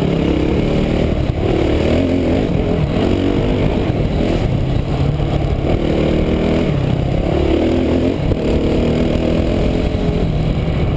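Dirt bike engine running under a rider on a trail, its pitch climbing and dropping several times as the throttle is opened and closed.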